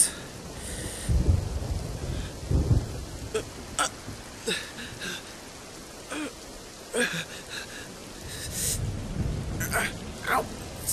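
Steady rain with low rumbles of thunder, about a second in, again near three seconds and near the end. Short sharp clicks and noises are scattered through it.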